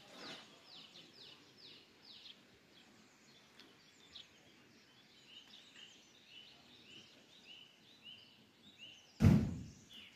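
Songbirds singing: a quick run of high falling notes, about three or four a second, for the first two seconds, then a slower series of short repeated notes, about two a second. About nine seconds in, a single loud, low thump.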